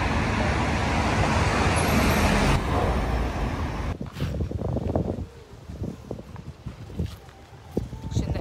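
City street traffic noise, a steady rush of passing cars. About four seconds in it drops off suddenly to a much quieter background with a few faint knocks.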